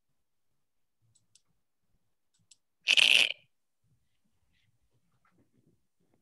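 A few faint clicks, then one short burst of rustling noise about half a second long, midway through.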